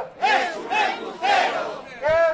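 A crowd of protesters chanting a slogan in unison, in rhythmic shouted syllables.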